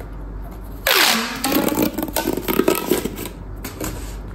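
Corrugated plastic pop tube being pulled and stretched, starting suddenly about a second in with a falling sweep, then a run of quick rasping, zipping pops from its ridges that lasts until just before the end.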